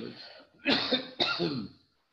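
A man clearing his throat: two short bursts about half a second apart.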